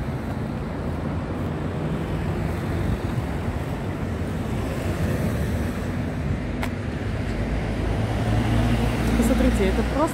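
Steady road traffic noise from passing cars, with a deeper low rumble building over the last two seconds as a heavier vehicle goes by. A single sharp click sounds about two-thirds of the way through.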